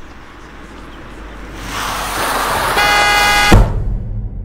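A car comes on fast, its noise swelling, and its horn blares for under a second before a heavy thud cuts it off: a car hitting a pedestrian.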